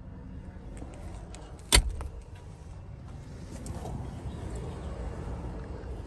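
A single sharp clunk of a pickup truck's door, about two seconds in, over a steady low rumble of background and handling noise.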